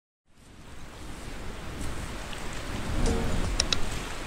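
Intro sound effect: a steady rushing, surf-like noise that fades in over the first second and swells, with two quick sharp clicks near the end, mouse-click effects for an animated subscribe button.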